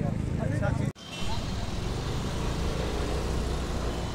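People talking close by for about a second, cut off abruptly, then steady outdoor street noise: a low rumble of road traffic.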